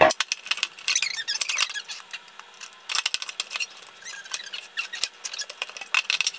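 Wet plastic squeaking and clicking as a filter cartridge is pushed and worked into the socket of a clear plastic water-filter dispenser tank. The sound is a run of short squeaks and small clicks in clusters.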